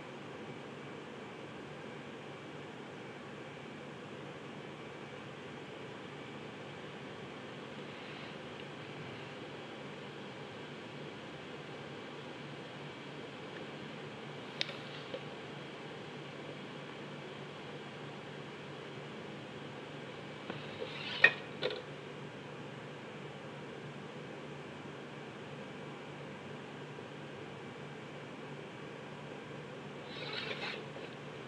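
Steady room hum and hiss, broken by a few clicks from a plastic set square and pencil handled on a drawing board: two small clicks about 15 seconds in and a sharper cluster about 21 seconds in.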